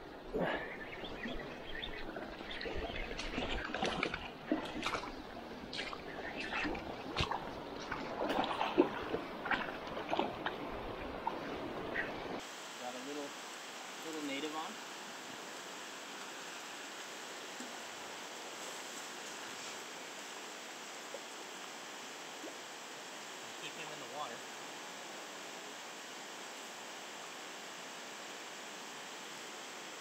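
Water splashing with many sharp knocks close to the microphone while a hooked coho salmon is fought in a shallow stream. About twelve seconds in this gives way abruptly to the steady rush of the stream's running water.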